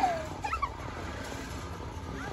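A child's short high squeals while riding a playground flying fox. There is one falling squeal right at the start and a couple of quick chirps about half a second in, then only faint background.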